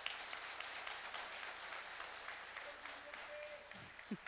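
Audience applauding: a steady patter of many hands clapping, fading out near the end.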